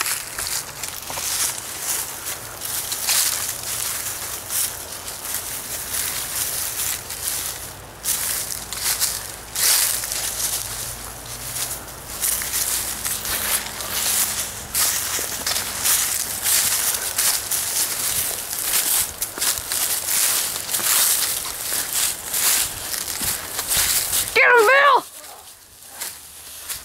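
Footsteps running through dry fallen leaves: a dense, continuous crunching and rustling. Near the end, a person gives a drawn-out yell that rises and falls.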